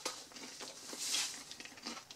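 Chewing a mouthful of chicken döner in toasted flatbread, with a few faint clicks and a short crisp rustle about a second in.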